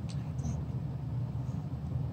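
A steady low background rumble, with a couple of faint clicks near the start.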